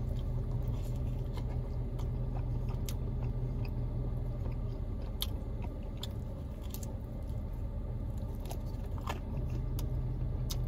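Close-miked chewing of a folded pizza-dough Papadia, with a few short, sharp crisp clicks, over a steady low hum.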